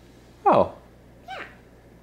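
A young child's voice making two short, playful animal cries, each sliding steeply down in pitch: a loud one about half a second in and a softer, higher one about a second later.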